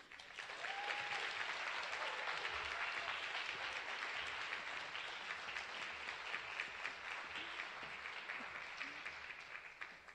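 Audience applauding, swelling within the first second, then slowly dying away near the end.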